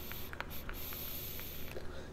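A draw on a vape: the steady airy hiss of breath pulled through the atomizer, with a few faint crackles from the coil, stopping shortly before the end.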